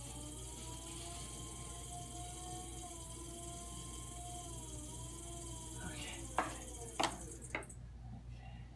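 Electric potter's wheel spinning with clay on it, its motor whine drifting slightly up and down in pitch as the speed changes, then fading out about five seconds in. A few sharp clicks follow near the end.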